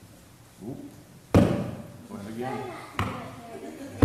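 Hockey stick and puck: one loud sharp knock about a second and a half in, then a smaller knock near the end, each echoing in a large room. Murmured voices fill the gap between them.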